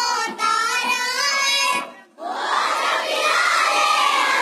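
A young child singing a line of an unaccompanied Urdu naat into a microphone, then about two seconds in many children's voices take up the line together as a chorus.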